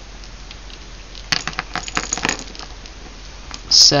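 Small metal jingle bells on a wire-hoop ornament jingling as they are handled. There is a quick run of light metallic clinks from about a second in to the middle of the clip, then a few scattered clinks.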